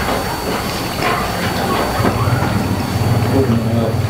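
Steady background noise with faint voices. About halfway through, a steady low motor hum joins in.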